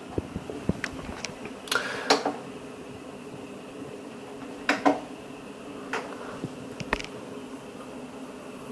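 A dozen or so short, sharp plastic clicks, some in quick pairs, as the monitor's rear OSD buttons and joystick are pressed, over a steady low hum.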